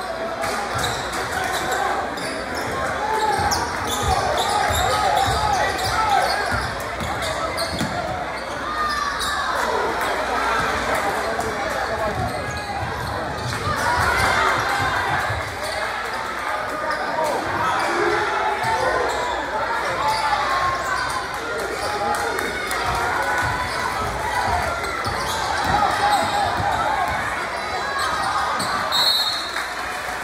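Basketball bouncing on a hardwood gym floor during live play, with spectators' and players' voices and shouts echoing through a gymnasium.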